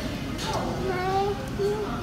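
Indistinct background talk of people in a restaurant dining room, with one voice holding a few drawn-out notes about halfway through.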